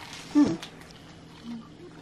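A brief low "hmm" from a person, falling in pitch, then quiet room tone.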